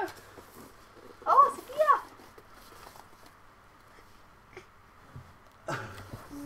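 A young child's voice: two short, high-pitched wordless vocal sounds, rising and falling in pitch, a little over a second in. Otherwise only faint room sound with a couple of light taps.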